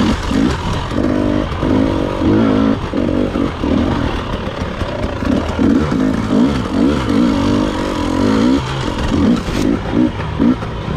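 Dirt bike engine heard from on the bike, revving up and falling back again and again as the throttle is worked on and off through tight singletrack turns.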